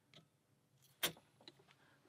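Quiet ticks of a pick working the pins of a brass Alpha padlock, then one sharp metallic click about a second in as the plug turns and the lock opens.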